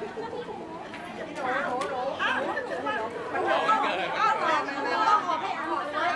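Several people talking at once in casual chatter, growing louder about a second and a half in.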